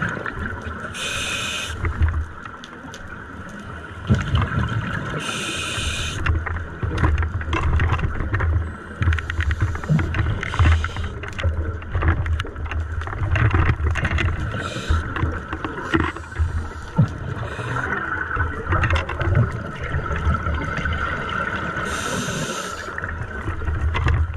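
Scuba regulator breathing heard underwater. Now and then there is a hissing inhale lasting about a second, and between them are long, uneven bursts of exhaled bubbles gurgling low.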